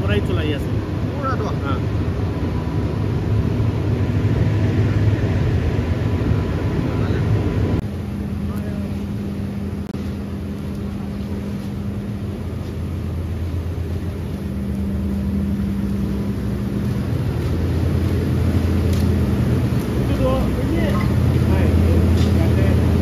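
Steady low drone of running factory machinery around a wood-fired steam boiler, with a faint high whine that stops about eight seconds in.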